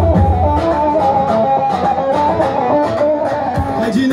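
Kurdish halay dance music played by a live band: an instrumental melody line with no singing. The drum and bass beat drops out about half a second in and comes back near the end.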